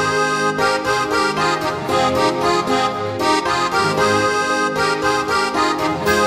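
Instrumental intro of a Silesian schlager song, led by accordion over a steady beat.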